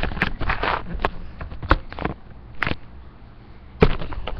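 Handling noise from a phone camera being carried and moved about: irregular knocks and rubbing, with a sharp thump near the end.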